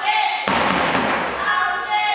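A sudden loud thud about half a second in, fading over about a second, over voices in a large hall.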